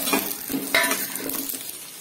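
A perforated steel spoon stirring whole shallots and garlic in oil in a stainless steel pan, scraping and clinking against the pan, with two sharper clinks in the first second, over a light sizzle of the frying.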